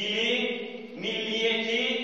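A man's voice chanting Arabic in a slow, melodic recitation: two long held phrases, the second beginning about a second in.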